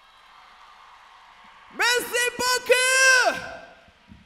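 A man's voice over the PA gives a few short high shouts, then one longer held call that falls off at its end. These come after a second and a half of faint hall noise following the end of a song.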